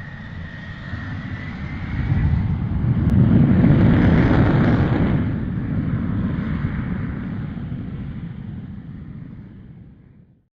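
Jet aircraft roar: a deep rumble with a high turbine whine. It builds to a peak a few seconds in, then fades away like a jet passing by.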